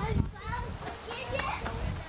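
Indistinct chatter of several people talking at once, children's voices among them, over a low rumble on the microphone.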